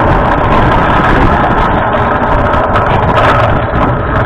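Loud, steady rumble and wind buffeting on an onboard camera's microphone as a human-powered aircraft rolls along a runway on its takeoff run.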